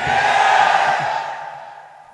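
A man's long, breathy exhale into a PA microphone, a rush of breath with no voice in it that fades away over about two seconds.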